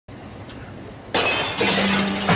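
A glass window pane shattering when a thrown stone hits it, a sudden loud crash about a second in with the glass ringing on after it.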